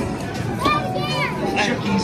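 Children's voices and play noise in a busy arcade, over a steady din of game machines and music.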